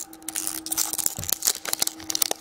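Plastic wrapping on a toy surprise egg crinkling as fingers handle and peel it, a rapid run of small crackles.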